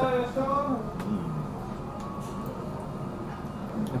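Restaurant room noise: a steady low hum, with a man's voice trailing off in the first second or so and a single light click about a second in.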